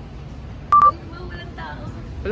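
A single short electronic beep, one steady high tone, about two-thirds of a second in, over faint background chatter.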